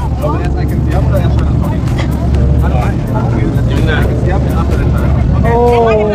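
Steady low rumble of a river tour boat's engine, with chatter from passengers on the deck over it and a voice exclaiming near the end.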